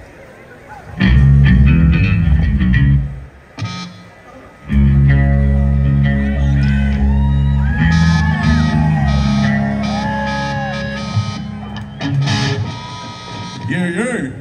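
Amplified electric bass and electric guitar played loosely on stage: a few loud separate bass notes, then a held chord ringing out from about five seconds in with bending guitar notes above it, slowly fading, and a short loud burst near the end.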